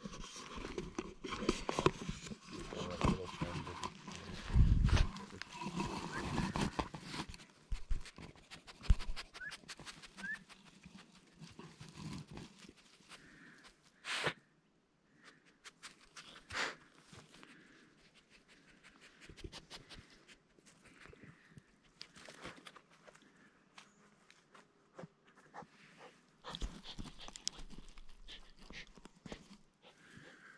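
A dog panting and sniffing close to the microphone, with rustling and scattered knocks, busiest in the first eight seconds.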